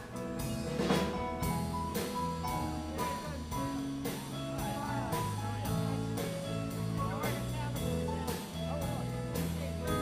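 Live country band playing an instrumental break, with the drum kit keeping a steady beat under bass and guitars.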